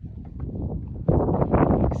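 A horse's muzzle pressing and rubbing against the camera makes scuffing and handling noise on the microphone, which swells into a loud rush of noise about a second in.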